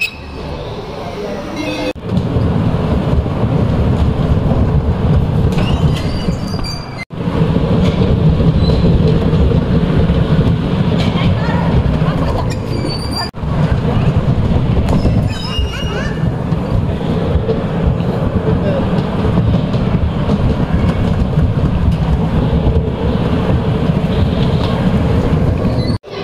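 Bumper cars running on the rink: a loud, steady rumble of the electric cars' motors and wheels rolling over the floor, broken off briefly twice.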